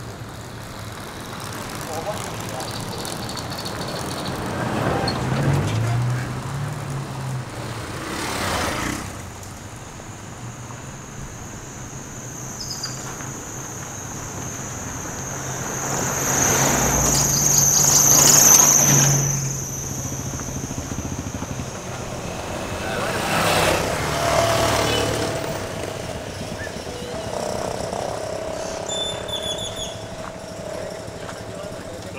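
Cars passing one at a time on a road, each swelling and fading; the loudest goes by close about eighteen seconds in. A steady high whine runs underneath for much of the time.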